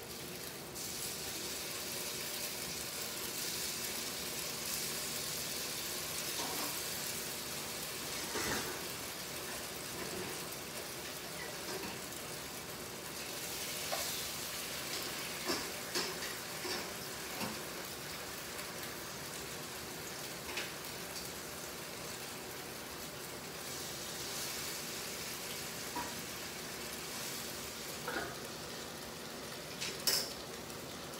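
Food sizzling in a hot pan: a steady hiss that swells and fades, with a few small pops and knocks.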